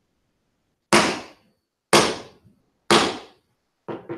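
Gavel raps: three sharp knocks about a second apart, then two fainter knocks in quick succession near the end.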